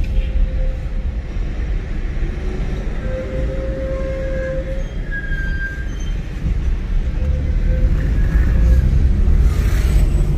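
Car engine and road noise heard from inside the cabin: a steady low rumble, with a few faint, brief whines in the middle.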